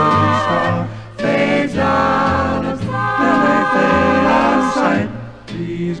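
Mixed swing choir singing a lyric phrase in close harmony, several voices holding chords together, with short breaks between lines.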